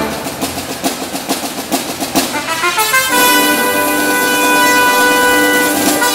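Marching band brass section and percussion playing: a busy, accented passage with drum strokes for the first half, then about three seconds in, the brass hold one long sustained chord.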